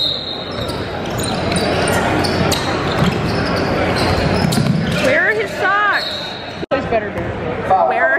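A basketball being dribbled on a hardwood court, bouncing repeatedly, with sneakers squeaking on the floor about five seconds in and again near the end, over crowd noise in a large gym.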